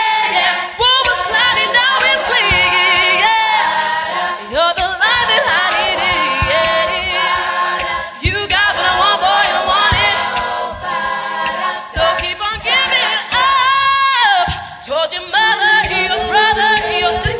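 All-female a cappella group singing live: a solo voice with wide vibrato over backing voices, with a steady beat of short low thumps.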